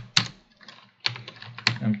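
Computer keyboard being typed on: a couple of key clicks, then a quicker run of keystrokes about a second in.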